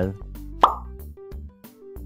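Background music with a steady beat. A little over half a second in comes a loud cartoon 'plop' sound effect, a short, quick upward swoop in pitch.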